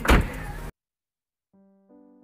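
A single loud thump in a car interior, then the sound cuts off abruptly. Soft electric-piano background music with slow held chords begins about one and a half seconds in.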